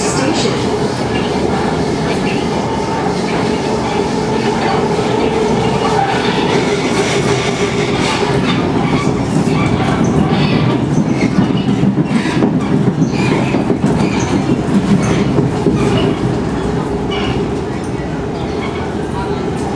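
SMRT C151 metro train running, heard from inside the carriage by the doors: a steady rolling rumble of wheels on rail, with a series of short clicks in the second half.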